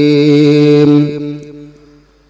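A man's voice chanting a religious invocation, holding one long steady note at the end of a line. The note fades away over about a second, starting about a second in.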